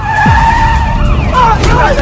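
Car tyres screeching in one loud, held squeal for about a second, followed by excited shouting voices.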